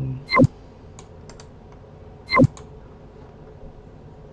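Computer keyboard and mouse being used: two loud knocks, one just after the start and one about two seconds later, with a few light clicks between them.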